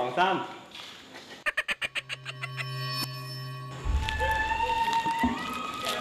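Eerie edited-in sound effects and music: a quick rattle of about eight clicks, then a steady electric-sounding hum, then a low rumbling drone under long held tones that slide up in pitch.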